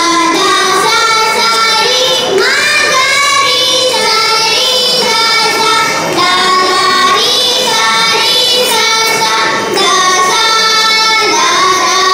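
A small group of young girls singing a Carnatic song together, with long held notes and sliding ornaments, including a clear upward slide about two seconds in.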